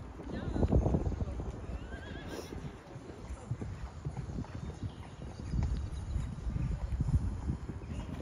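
Hoofbeats of a show-jumping horse cantering on a sand arena: irregular dull thuds, loudest about a second in and again in the second half.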